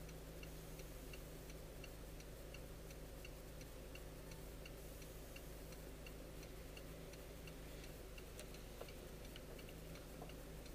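A car's turn-signal indicator ticking evenly, about two ticks a second, while the car sits waiting to turn, with the engine's faint steady idle hum underneath.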